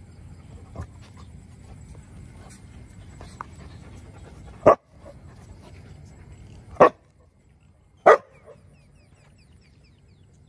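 A young dog barking at a crab it has found: three short, loud barks, about 4.5, 7 and 8 seconds in, with a fainter one about a second in. This is alert barking, the way the dog signals a crab, insect or snake.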